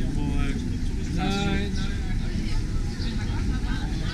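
Street ambience: a steady low rumble of road traffic, with two brief snatches of nearby voices, the louder one about a second in.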